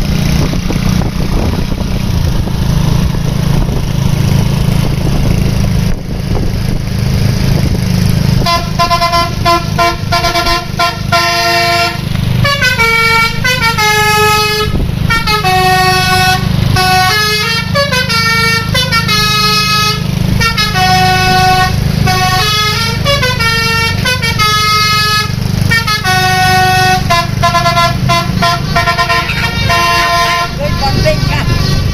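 A bus 'telolet' multi-tone air horn plays a tune of quick stepped notes, starting about eight seconds in and going on to the end. Under it runs the steady low rumble of the coach's diesel engine, which is heard alone for the first eight seconds.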